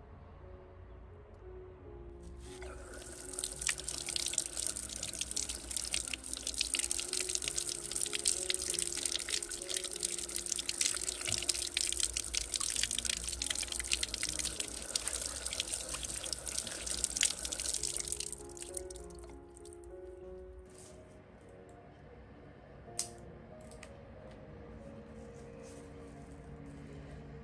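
Water running from an outdoor tap through a short hose and splashing over hands as they rinse a tomato. The water starts about two seconds in and stops a few seconds before the end. Background music plays throughout.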